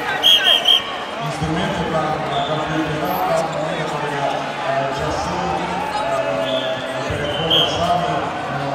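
Referee's whistle: three short, sharp blasts just after the start to halt ground wrestling, and one more short blast near the end to restart the bout, over the steady chatter of a crowded sports hall.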